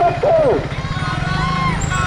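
A man shouting a protest slogan, his call breaking off about half a second in, followed by a short lull with faint voices over a steady low rumble.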